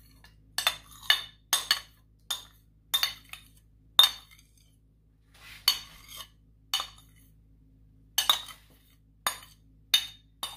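A metal spoon clinking and tapping against a ceramic bowl and a cream carton as thick cream is scooped out into the bowl. There are about a dozen sharp clinks at irregular intervals.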